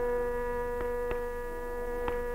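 Steady sruti drone, most likely the concert's tambura, sustaining its notes unbroken between vocal phrases, with two faint taps about a second in.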